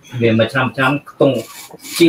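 A man talking over a video-call link, with a short hiss near the end.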